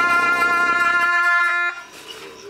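Tibetan ritual wind instruments holding one long, steady note, with a lower drone dropping out about a second in and the note cutting off suddenly near the end.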